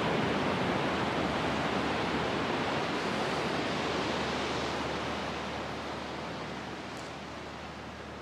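Ocean surf washing onto a sandy beach, a steady rush that slowly fades over the second half.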